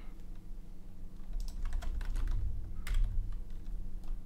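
Typing on a computer keyboard: a few scattered keystrokes, then a quick run of them in the middle and one more shortly after.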